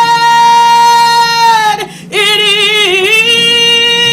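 Gospel choir singing. A long high note is held for nearly two seconds, breaks off briefly, then a second held note follows with a slight waver.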